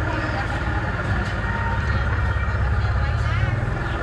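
Busy street-market ambience: voices of vendors and shoppers chattering in the background over a steady low engine rumble.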